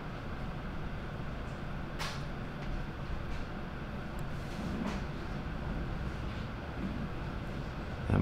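Steady low background rumble, with a faint click about two seconds in and another near five seconds.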